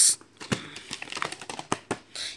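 Plastic VHS clamshell case being opened and the cassette lifted out: an irregular run of small plastic clicks and taps.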